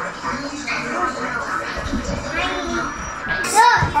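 Children's voices talking and exclaiming over background music, with a sharp rising exclamation near the end.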